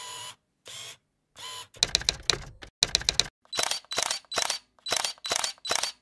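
Sound effects of an animated intro: a run of short mechanical clicks and clacks. They start spaced out, turn into quick rattling clusters about two seconds in, then settle into evenly spaced clicks about three a second, each with a faint high ring.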